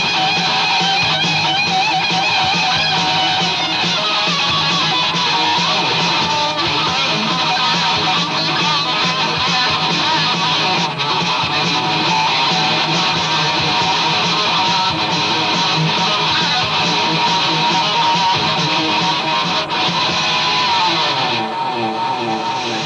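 Washburn electric guitar played solo and unaccompanied through an amplifier, a continuous stream of notes and chords without a break, thinning briefly near the end.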